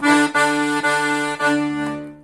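Todeschini piano accordion: the right-hand thumb plays a D on the treble keyboard four times in a row, four short steady notes with the last one fading out near the end.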